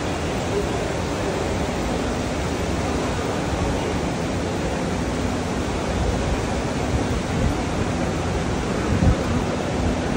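Steady, hiss-like background roar of a busy airport arrivals area, with indistinct voices in it and a brief thump about nine seconds in.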